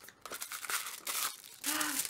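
Paper and thin cardboard crinkling and rustling as a small cardboard box is pulled open and its contents are unwrapped from tissue paper, in an irregular run of crackles.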